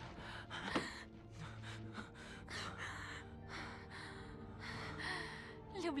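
Shaky, tearful gasping breaths of someone crying, a dozen or so in quick uneven succession, over a soft sustained music score.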